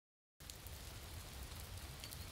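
Field recording of rain: a steady, even hiss of falling rain that starts about half a second in.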